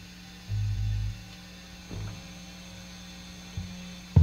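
Steady amplifier hum with a low electric bass note held for about half a second, then a shorter low note about two seconds in and a light knock near the end.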